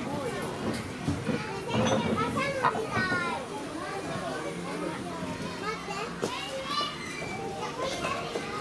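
Several children's voices chattering and calling out over one another.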